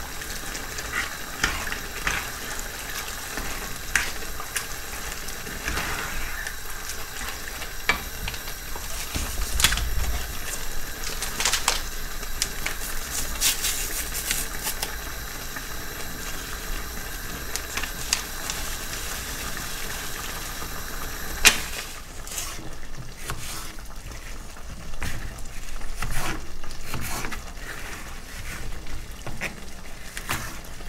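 A pan of mince, tomatoes and beans sizzling on a gas hob while a spoon stirs it, scraping and clicking against the pot. About two-thirds of the way through the steady hiss drops away, and near the end a knife cuts a pepper on a plastic chopping board.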